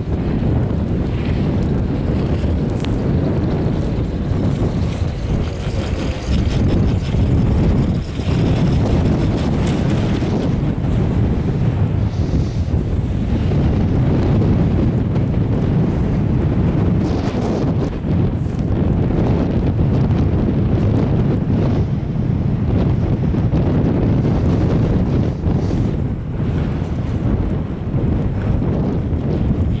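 Wind buffeting the microphone on an open chairlift ride, a steady low rumble.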